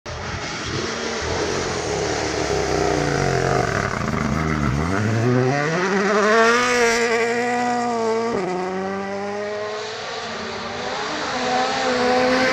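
Toyota GR Yaris Rally1 car's turbocharged engine on a gravel road. The note falls as the car slows into a corner, climbs hard as it accelerates out, and drops sharply once about eight seconds in, at an upshift. Gravel sprays from the tyres throughout.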